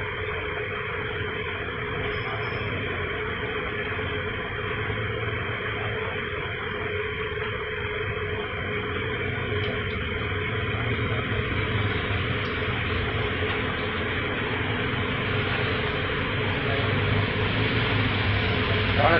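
Steady hiss with a low, even hum and no distinct knocks or clangs.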